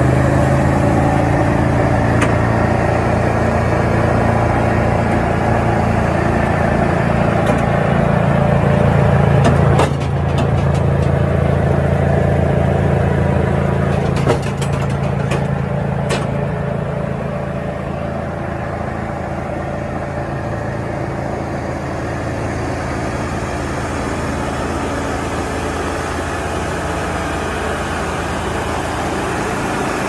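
Bandit 254XP wood chipper's engine running steadily with nothing being fed through it. A few sharp clicks come in the middle, and the sound grows somewhat quieter in the second half.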